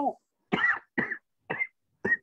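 A woman coughing three times in quick succession, short coughs about half a second apart.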